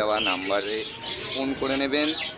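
A flock of budgerigars chattering, with many quick high chirps and warbles overlapping.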